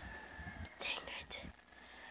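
Faint whispering close to the microphone: a few short breathy bursts around the middle, with no voiced speech.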